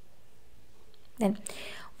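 Faint steady room hiss, then a single spoken word just over a second in, followed by a short breathy sound.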